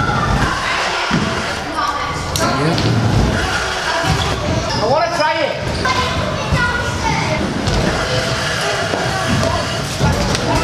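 Scooter riding on wooden skatepark ramps: wheels rolling and several dull thuds from the deck and wheels hitting the ramps, over background voices.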